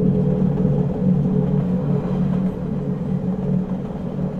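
Steady low rumble of a train in motion, heard from inside a passenger coach.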